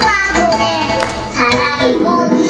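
Music: a children's song, with young voices singing over instrumental accompaniment.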